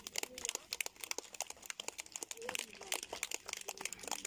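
A crowd applauding, with many separate, irregular claps and faint voices underneath.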